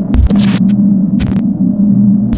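Sound design for a channel logo sting: a loud, steady electronic buzzing hum with several short crackles of static and low thuds over it.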